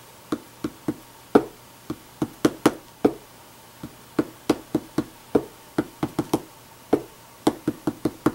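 A wood-mounted rubber stamp is knocked down onto paper on a tabletop again and again, making sharp, irregular taps at about three a second.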